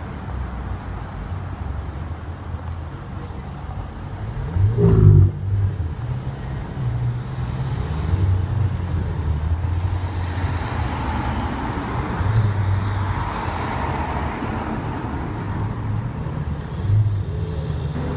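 Ferrari 488 twin-turbo V8 engines running at low speed in slow town traffic, a steady low rumble. About five seconds in comes one short rev, the loudest moment, which falls straight back. A car swells past close by from about ten to fourteen seconds in.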